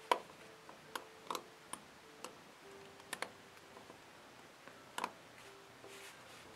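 Faint, irregular clicks of a metal crochet hook against the pins of a clear plastic Monster Tail rubber-band loom as the bands are lifted over onto one pin. There are about eight clicks, a few sharper than the rest.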